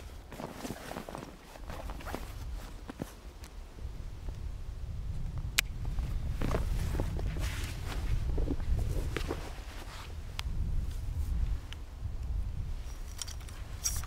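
Rustling of outdoor clothing and hunting gear as a person kneels, gets up and handles a rucksack, with shuffling steps, a few sharp clicks and a low rumble underneath.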